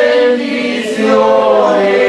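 A congregation of mixed men's and women's voices singing a worship hymn together. The singing dips briefly between phrases about half a second in and picks up again after about a second.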